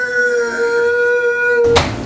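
A man bawling in one long, high, held wail that drifts slightly down, then cuts off suddenly near the end, with a sharp click.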